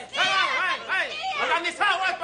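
Several people talking and shouting over one another, their words indistinct.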